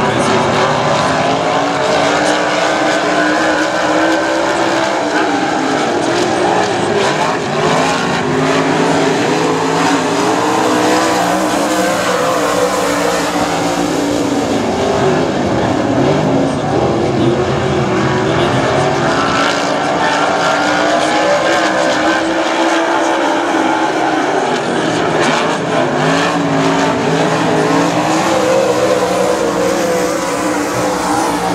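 Dirt modified race cars' V8 engines running flat out in a pack, their pitch rising and falling again and again as they accelerate down the straights and lift for the turns.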